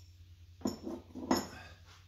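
Metal engine parts clinking against each other a few times between about half a second and a second and a half in, as pushrods and parts are handled on a stripped engine. A low steady hum runs underneath.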